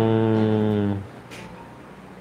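A man's voice holding one long filler sound at a steady low pitch, a drawn-out hesitation while searching for a word, which stops about a second in and gives way to a quiet pause.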